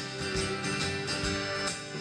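Live country-rock band playing between sung lines: strummed acoustic guitar with bowed fiddle and electric guitar over drums.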